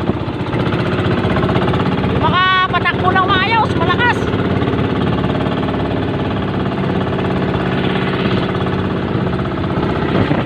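The engine of a motorized outrigger fishing boat (bangka) running steadily while the boat is under way. A voice calls out briefly over it between about two and four seconds in.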